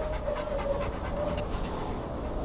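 Young chocolate Labrador retriever panting, with a steady tone running underneath.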